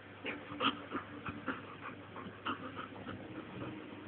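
Old English Sheepdog puppy making an irregular run of short, quick dog sounds while playing.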